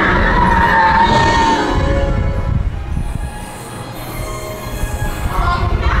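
A dark-ride car rolling along its track with a steady low rumble. Ride soundtrack music fades out over the first second or two and faintly returns near the end.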